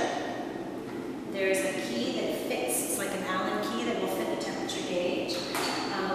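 A woman's voice speaking.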